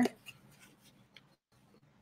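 Faint paper rustling with a small tick as a soap bar's paper wrapper is opened at one end; the sound then drops out completely for most of a second.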